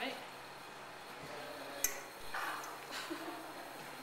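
Faint voices in a small room, with one sharp click about two seconds in.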